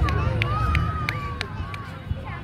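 A fireworks display: a steady low rumble of bursts with sharp pops every few tenths of a second, over crowd voices.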